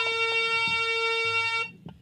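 A harmonium holding one steady reed note, which cuts off about a second and a half in, leaving a brief gap.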